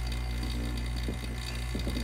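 Small electric rotary-vane vacuum pump running steadily, pulling vacuum on a transmission valve body, with a few faint handling clicks about a second in.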